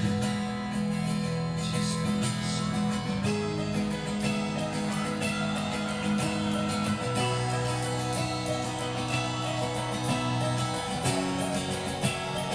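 Live rock band playing a slow instrumental passage: sustained guitar chords held for a few seconds each, moving to a new chord every three to four seconds.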